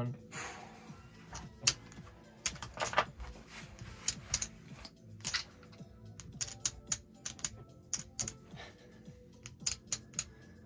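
Irregular sharp clicks and clacks of playing cards being gathered off a felt blackjack table and casino chips being picked up and stacked, with a chip stack set down near the end.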